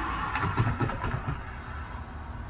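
A person laughs briefly, a few quick bursts about half a second in, over a steady low background rumble.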